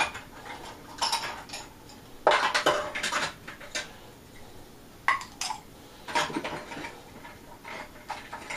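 Small hard items clinking and clattering irregularly as winemaking gear (bung and airlock parts) is picked out and handled, the loudest clatter a little over two seconds in.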